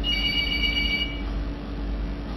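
Electronic telephone beep: several high steady tones sounding together for about a second, while a phone call is being put through and has not yet connected. A steady low hum runs underneath.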